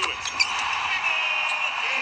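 Arena sound of an NBA game heard through a TV speaker: a steady crowd noise with a few short, sharp knocks from the court.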